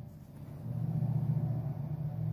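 A low, steady rumble that swells about half a second in and holds.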